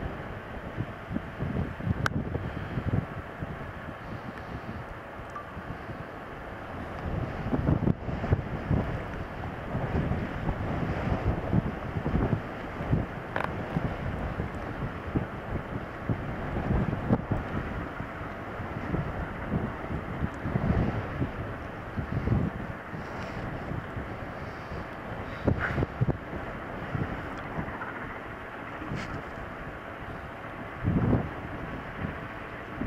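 Strong gusty wind buffeting the microphone in uneven surges, louder from about a quarter of the way in. Beneath it, the steam locomotive 46115 Scots Guardsman works hard uphill against a headwind.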